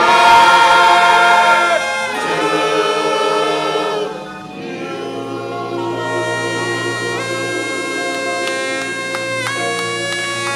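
A gospel choir singing with a live band that includes a horn. The singing is loud for the first four seconds or so, then eases into quieter held chords.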